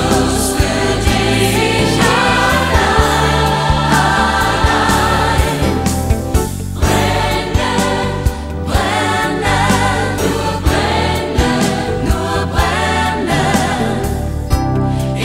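A studio choir singing a Christian song over a band accompaniment with a steady beat and bass.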